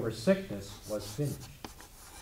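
Chalk scratching and tapping on a blackboard as someone writes, with a man's voice speaking over the first second or so.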